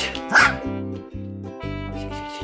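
A Bichon Frise barks once, about half a second in, over background music: a demand bark asking for its toy to be thrown.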